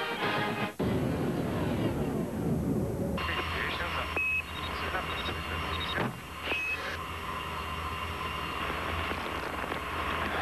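Music cut off abruptly about a second in, followed by a rumbling noise, then the hiss of a radio-style transmission with a low hum and two short high beeps, like the tones that mark spacecraft radio messages, in a commercial set aboard a space shuttle.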